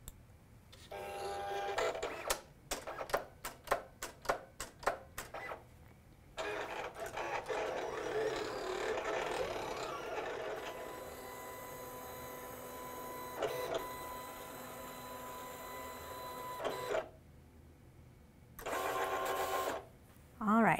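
Silhouette Cameo 4 cutting machine cutting cardstock with its motors whirring as the blade carriage and rollers move. It gives a short whine about a second in, a quick series of short separate moves, then a long continuous run, and another short whine near the end.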